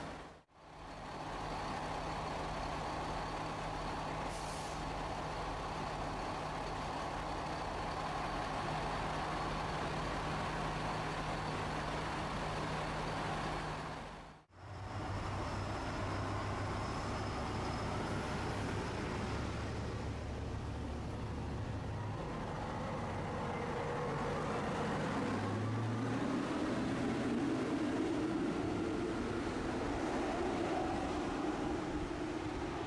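A JR Shikoku diesel railcar's engine idling with a steady low hum at the platform. After a break about halfway, the railcar's engine runs again and rises and grows louder in the last few seconds as the railcar pulls away.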